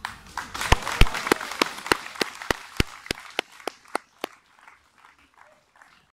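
Audience applauding, with one person clapping close by at about three claps a second; the applause dies away after about four seconds.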